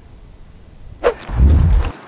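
Loud, low rumbling handling noise on a clip-on lapel mic as the wearer moves and raises his arms. It starts with a sharp knock about a second in and lasts just under a second before cutting off.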